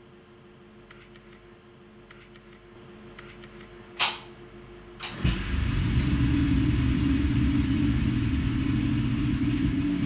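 A sharp clunk about four seconds in and another a second later. Then a scanning electron microscope's vacuum pump starts and runs with a loud steady hum and low rumble, evacuating the specimen chamber.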